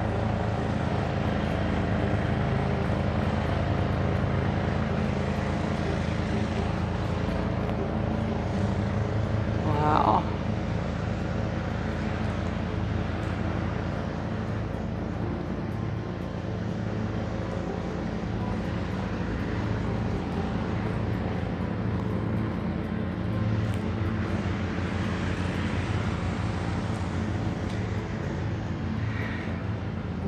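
Steady low mechanical drone with several even held pitches, as from a running machine, with a brief higher rising sound about ten seconds in.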